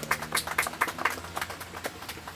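Scattered applause from a small group, the separate claps coming irregularly at about five or six a second.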